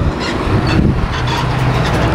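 Steady low hum of an engine running close by, with faint voices over it.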